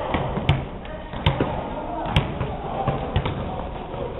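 Basketball bouncing on a gym floor: about four sharp bounces, roughly a second apart, over a murmur of voices.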